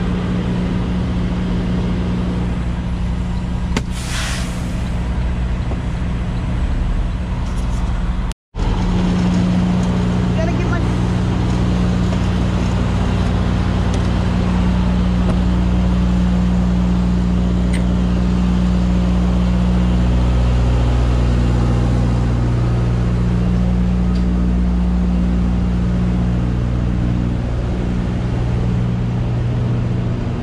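Heavy diesel engine idling with a steady low drone, typical of a semi-truck parked at a loading dock. There is a short hiss of air about four seconds in, and the sound cuts out for a moment just past eight seconds.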